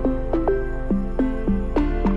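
Background music: a new-age electronic track of plucked notes, about three or four a second, each dropping quickly in pitch like a water drop, over held bass notes.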